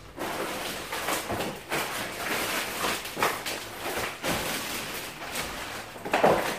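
Thin plastic grocery bag rustling and crinkling as hands rummage through it and pull out packages, with small knocks of plastic packaging.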